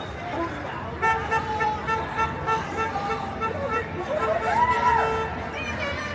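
Vehicle horn sounding in a rapid run of short honks, about four a second, starting about a second in, over street noise and voices.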